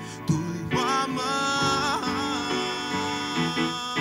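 A male soloist singing a slow worship song into a microphone over instrumental accompaniment, holding notes with vibrato.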